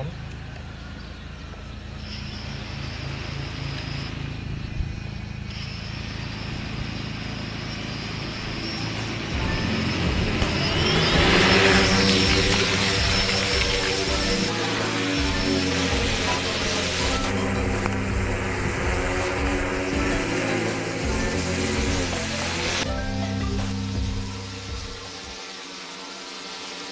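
Background music, with a DIY quadcopter's brushless motors and propellers spinning up in a rising whine about ten seconds in, then running as it flies.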